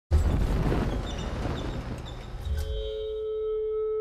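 Film-trailer sound design: a sudden low rumble with crackling noise comes in at once and fades over about two and a half seconds. A single steady ringing tone then takes over and is held.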